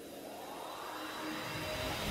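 Synthesized whoosh riser of a logo intro animation: a rushing noise swell that climbs in pitch and grows steadily louder.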